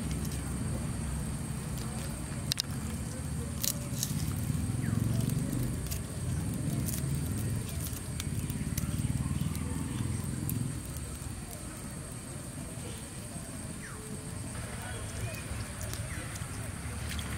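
Dry garlic skins crackling and snapping in scattered clicks as cloves are peeled by hand, over a low rumble.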